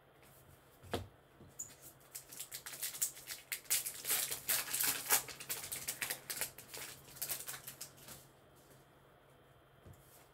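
A baseball card pack being opened by hand, its wrapper crinkling in a dense, crackly rustle for about six seconds. A single light tap comes about a second in.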